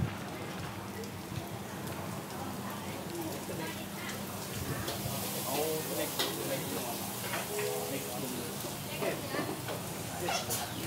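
Steady sizzle of food frying in a restaurant kitchen, with people talking in the background from about five seconds in.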